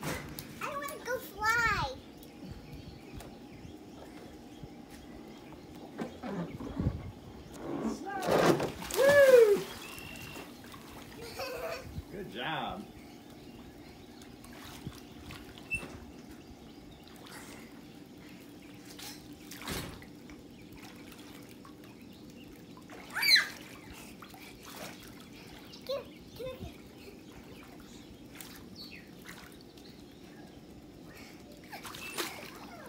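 Swimming-pool water splashing and lapping as a child jumps in and swims. High voices call out a few times, loudest about nine seconds in.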